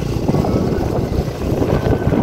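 Motorcycle being ridden over a rough gravel road: engine and tyre noise in a steady, rough rumble.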